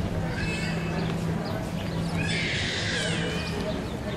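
Outdoor ambience of people in a plaza, with a steady low hum and faint voices; about two seconds in, a high wavering cry rises over it for just over a second.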